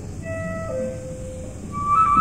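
Orchestral opera music in a quiet passage: a few soft, sparse held notes moving down in pitch, with a louder high sustained note entering near the end.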